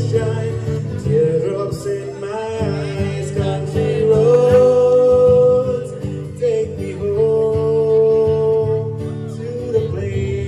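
A man singing with several long held notes over a strummed acoustic guitar.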